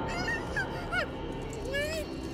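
Muffled, nasal squeals from a gagged young woman: a couple of short ones about halfway in and a longer rising one near the end, her reaction to a goat licking her feet.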